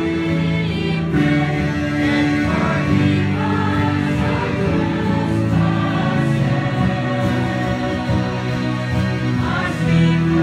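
Electronic keyboard playing a slow church hymn in long, held chords, with voices singing along.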